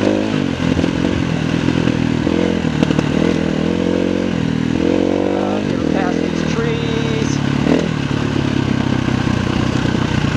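KTM 350 EXC-F enduro bike's single-cylinder four-stroke engine, running under load over a rocky dirt trail, its pitch rising and falling several times as the throttle opens and closes.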